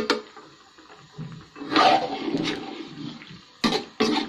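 Metal spoon stirring cauliflower florets in a hot wok, with a burst of sizzling and scraping about two seconds in. A sharp knock of the spoon against the pan comes at the start and another near the end.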